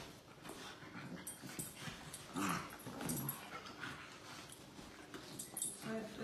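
Two puppies play-wrestling and tugging at a toy: scuffling on the bed and short puppy vocalizations. The clearest comes a little over two seconds in.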